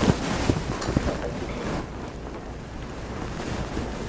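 Bible pages being turned: paper rustling with a few light ticks in the first second or so, growing quieter after about two seconds.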